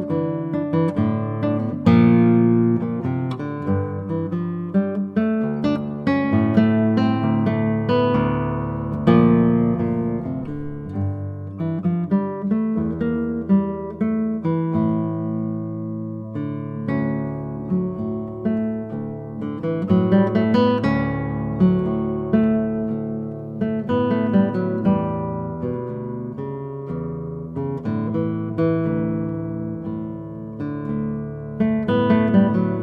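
Solo 2019 Juan Hernandez Hauser-model concert classical guitar, its nylon strings fingerpicked: a melody over bass notes and chords, the notes ringing on into each other.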